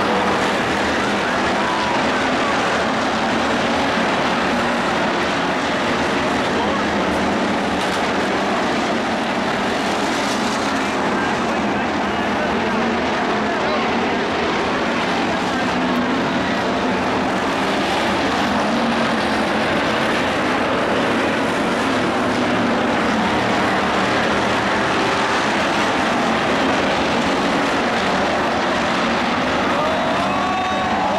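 Hobby stock cars' V8 engines running hard at steady high revs as they race around a dirt oval, heard from the stands.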